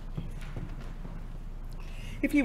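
A few soft, scattered knocks over a faint, steady low hum in a quiet room.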